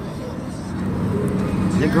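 Steady engine and road noise inside a moving car's cabin, a low hum that grows slightly louder.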